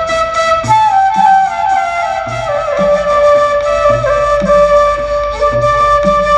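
Bamboo transverse flute (tula) playing a sustained, ornamented melody with slides between notes, over a low, steady accompanying beat about every 0.8 seconds.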